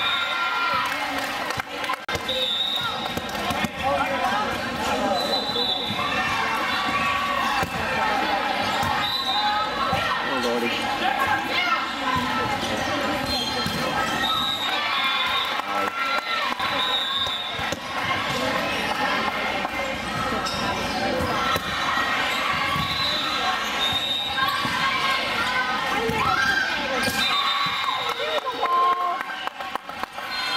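Indoor volleyball rally: players' sneakers squeak on the court floor and the ball is struck a few times, over continuous calls and chatter from players and spectators.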